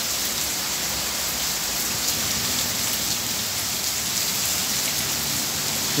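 Moderate to heavy rain from a passing cumulonimbus shower, falling steadily as an even hiss with no let-up.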